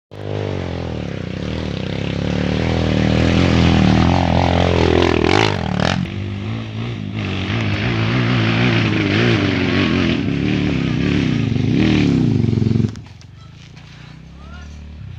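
Dirt bike engine revving hard up a steep dirt hill climb, its pitch rising and falling with the throttle. About a second before the end the engine sound cuts off suddenly as the bike halts on the slope.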